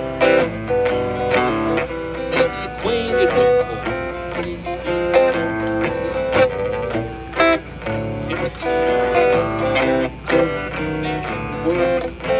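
Electric guitar played through a stage PA, a steady run of picked notes and chords with sharp plucked attacks.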